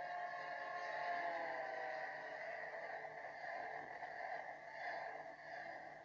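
A train whistle sounding as several held tones, its pitch dropping about a second in as it races past: the Doppler effect.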